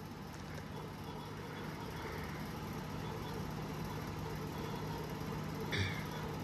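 Steady low background hum with an even hiss, with one brief short sound just before the end.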